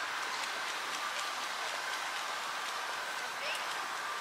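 Steady outdoor background noise: an even, soft hiss with no single event standing out.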